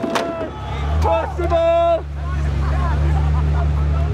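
A red sports car's engine idling close by, a steady low rumble that starts about a second in. Crowd voices over it, with one drawn-out shouted call about a second and a half in.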